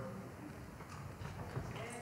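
Faint footsteps of people walking, with quiet room murmur underneath.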